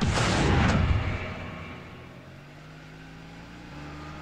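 SUV engine revving as the vehicle pulls away: a loud rushing burst for about a second that dies away into a steady low engine hum.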